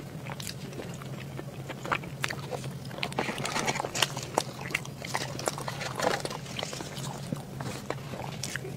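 Close-miked chewing and mouth sounds of someone eating a soft pastry, with a stretch of crinkling from a foil wrapper being handled in the middle.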